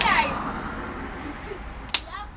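Children's voices: a short high cry at the start over fading chatter, then a single sharp clap-like crack just before the end.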